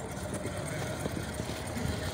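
A motor vehicle engine running steadily, a low rumble with a faint steady hum.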